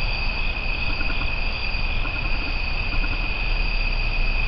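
Night insect chorus: a steady high-pitched drone of two unbroken tones, one an octave above the other, with a fainter pulsing call between them. A steady low rumble runs underneath.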